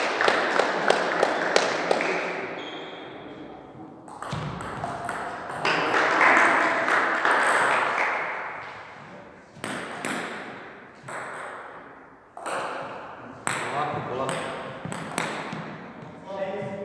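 Table tennis ball clicking off bats and table in a quick rally for the first two seconds, about three or four hits a second. After a pause filled with voices, the ball is bounced a few separate times later on, each click ringing briefly in the hall.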